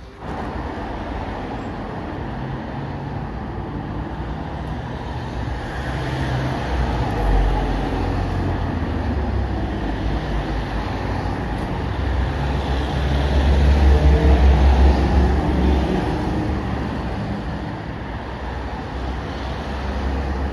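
Road traffic on a busy multi-lane street: cars, a minibus and a box truck passing close by in a continuous rumble, swelling louder as heavier vehicles go past about seven seconds in and again around thirteen to fifteen seconds.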